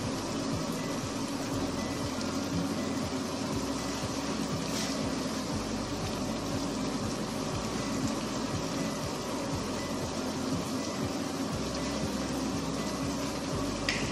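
Vegetables and sauce simmering in a frying pan on a gas burner, a steady bubbling noise, with a couple of faint clicks.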